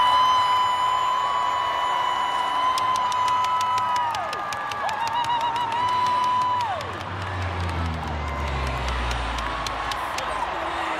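Stadium crowd cheering and whooping, with long held high calls that trail off downward. In the last few seconds the low rumble of a four-engine propeller aircraft flying overhead swells in.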